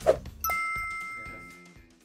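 Closing jingle of the outro: a short whoosh, then about half a second in a bright chime that rings and fades away, over backing music that ends with it.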